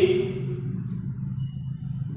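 A steady low background hum with no clear rhythm, with the tail of a man's spoken word at the very start.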